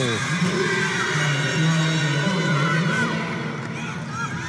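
Crowd and players cheering and shouting after a spike wins the point, many voices held on long notes together and slowly fading toward the end.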